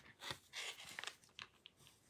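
Coloured pencil scratching faintly on a paper tile in a few short strokes.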